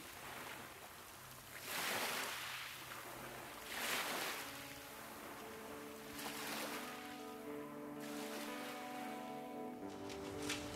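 Small sea waves washing in against the shore, swelling twice in the first half, with soft music of long held notes coming in about halfway.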